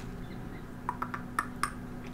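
A quick run of about five faint computer-mouse clicks about a second in, over a low steady background hum.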